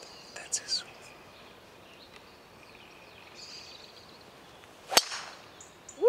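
A driver striking a golf ball off the tee: one sharp crack about five seconds in, with a short ringing tail.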